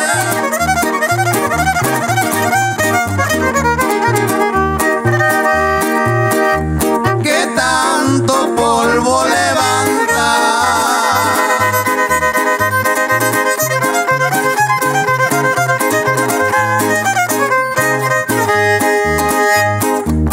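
Live trio music: a violin carries a wavering, ornamented melody over strummed guitar chords and a steady, regular bass pulse, with no singing.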